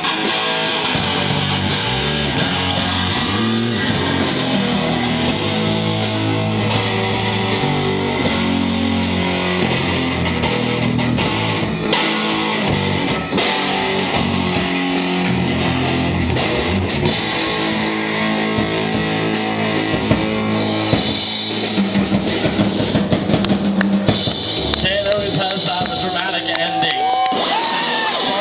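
Amateur rock band playing live: electric guitars, bass guitar and drum kit, with sharper drum and cymbal hits in the last few seconds.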